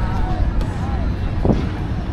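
Steady low rumble of wind buffeting the microphone outdoors, with faint voices of people talking in the distance and a single thump about one and a half seconds in.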